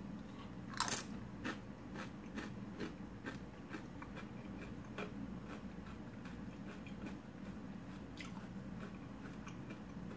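A cheese-dipped tortilla chip bitten with a crunch just under a second in, then crunchy chewing, about two crunches a second, which thins out after about five seconds.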